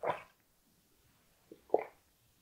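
Close-miked wet mouth sounds of a person sucking on a treat held on a stick: a short lip smack at the start and two more near the end.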